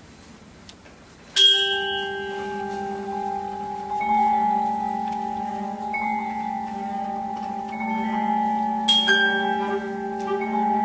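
Contemporary chamber music for clarinet, cello, harp and percussion beginning: after a moment of quiet, a sharp bell-like percussion strike about a second and a half in rings into long held notes, with a second strike near the end.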